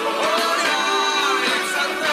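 Christian worship song in Spanish: voices singing a melodic line over instrumental accompaniment, at a steady level.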